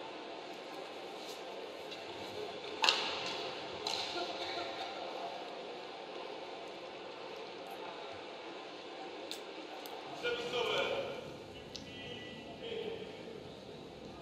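Large indoor sports-hall ambience with low talking and a few sharp clicks, the loudest about three seconds in.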